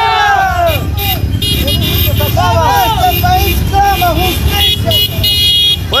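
Motorcycle and car engines running in a street caravan, with voices shouting over them and vehicle horns honking in the last second or so.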